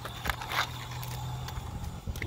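A small toy monster truck's wheels clicking and scraping on concrete, with one short scrape about half a second in, over a low steady hum.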